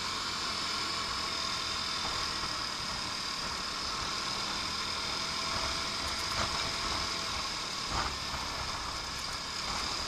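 Lance Havana Classic 125 scooter riding in traffic: steady engine and wind noise picked up by a handlebar-mounted camera. A brief thump about eight seconds in.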